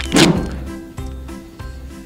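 A single loud thunk just after the start, fading over about half a second, over background music with sustained tones.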